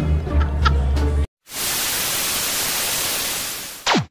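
Music runs for about a second and cuts off. After a short gap comes loud static hiss, like an untuned TV, ending near the end in a quick falling tone: an old-TV switch-off sound effect.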